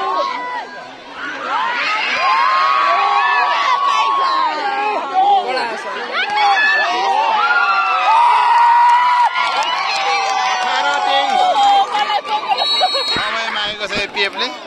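A large crowd of spectators cheering and shouting, many high voices yelling at once; it swells about two seconds in and stays loud.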